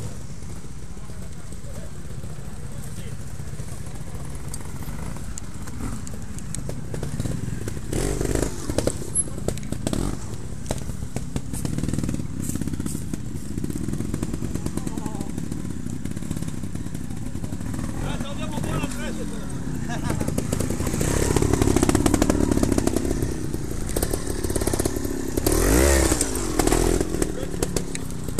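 A trials motorcycle engine running at low revs, with short throttle bursts about eight to ten seconds in and again after twenty seconds. The loudest burst comes near the end. Sharp knocks come with the bursts as the bike goes over the obstacles.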